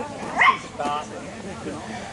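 Small dog whimpering and yipping, with a high cry that rises sharply about half a second in and a shorter one just after.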